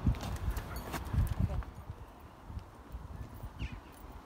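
A horse's hoofbeats on the ground, an irregular run of thuds that are strongest in the first second and a half and then fade away.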